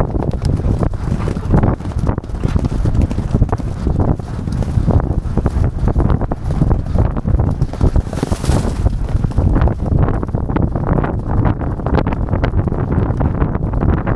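Heavy wind buffeting on the microphone of a camera mounted on a galloping racehorse, over the uneven thud of its hooves on turf. About eight seconds in, a brief rush of hiss comes as the horse jumps a hedge fence.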